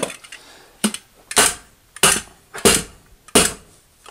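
Hammer stapler struck about five times, roughly two-thirds of a second apart, each blow driving a staple through plastic vapor barrier into the wooden framing at the base of the wall.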